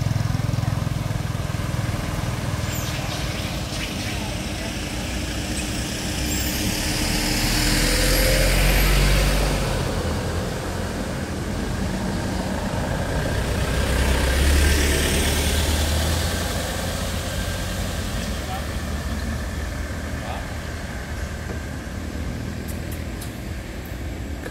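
Motor vehicles passing on a road: a steady low traffic rumble, with two vehicles going by about a third of the way in and again past the middle. Each pass is a rush of tyre and engine noise that swells and fades over a few seconds.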